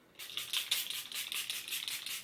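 Setting spray (Catrice Prime and Fine) misted at the face from a pump spray bottle: a quick run of short spritzes, about seven a second, starting a moment in.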